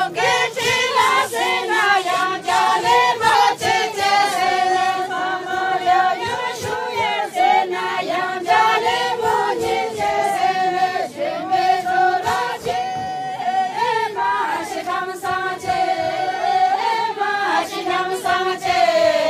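A group of women singing a Hyolmo folk song together in unison, unaccompanied, with held, wavering notes.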